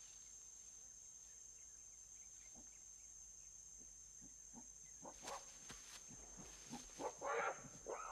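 A run of short animal calls starting about five seconds in and building, the loudest a second or so before the end, over a faint steady high-pitched jungle drone.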